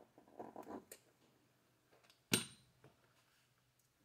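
Quiet handling of small RC differential parts and a hand tool: faint fiddling sounds in the first second ending in a light click, then one sharp metallic tap with a brief ring a little past halfway, as the nut driver is set down.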